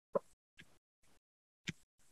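A few faint, short pops, four in two seconds, each starting sharply and cut off abruptly, with dead silence between them; the first and the last are the loudest.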